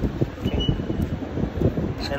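Wind buffeting the microphone in uneven gusts, a low rumbling noise.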